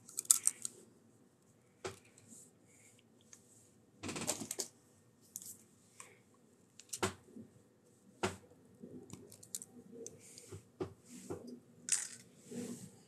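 Scattered short clicks and rustles of small items being handled on a table, the strongest about four and seven seconds in, between quiet stretches.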